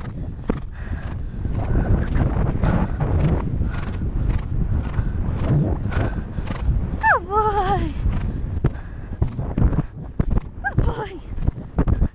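A horse cantering on grass, its hoofbeats in a steady rhythm heard from the rider's head-mounted camera. About seven seconds in comes one long falling, wavering vocal call, with a shorter one near the end.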